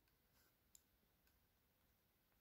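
Near silence, with a few faint clicks of a pen touching paper as it writes, the clearest about three quarters of a second in.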